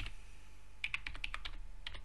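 Typing on a computer keyboard: a quick run of about eight keystrokes about a second in, over a steady low hum.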